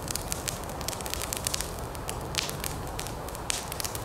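The fuse of a heavy firecracker burning: a steady hiss with many small irregular crackles as it spits sparks and smoke.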